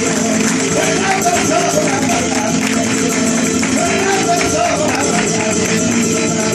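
Live flamenco: a male cantaor singing over flamenco guitar, with palmas (rhythmic hand-clapping) cracking sharply throughout.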